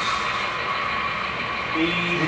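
Model Amtrak Dash 8 diesel locomotive's sound-decoder engine sound running steadily as the model moves, over a steady hum of background chatter; a man starts talking near the end.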